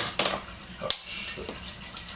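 Sharp clicks and clinks of a glass bottle and its cap being handled and opened, the loudest right at the start and just under a second in, with a few lighter clinks after.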